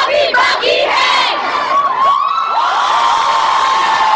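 Concert crowd cheering and screaming, many high voices at once: scattered shouts at first, then many voices holding one long scream together over the second half.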